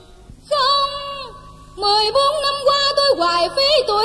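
A high female voice singing a cải lương melody, with held notes, slides between pitches and a wavering vibrato. It comes in about half a second in after a brief lull, breaks off for a moment, and resumes just before the two-second mark with a run of short held notes.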